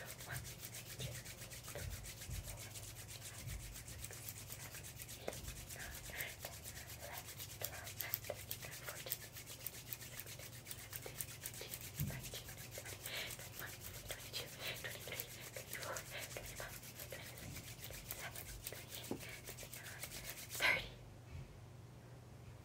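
Bare hands rubbing quickly palm against palm: a fast, faint, dry rasping that keeps up without a break and stops shortly before the end, followed by one short, louder sound.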